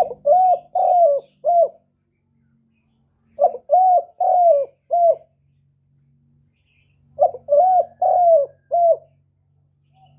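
Spotted dove cooing: three phrases about three and a half seconds apart, each of four notes, a short first note, two longer ones and a short last note.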